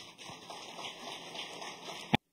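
Audience applauding: a faint, dense patter of many hands clapping.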